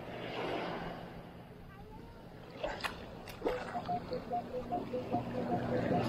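Minelab Equinox 800 metal detector giving a quick run of short beeps at two alternating pitches as the coil is swept over a freshly scooped hole in wet sand, an unsteady target whose ID jumps around. Before the beeps, surf wash and a couple of sharp knocks.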